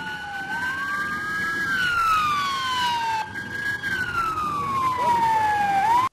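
Motorcade escort sirens from police motorcycles wailing. Two tones rise and fall slowly, each sweep lasting a couple of seconds, and they overlap out of step.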